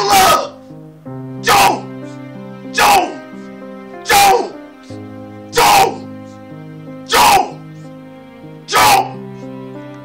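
A man's voice letting out seven short, loud shouts about every second and a half, each falling in pitch, over background keyboard music with held notes.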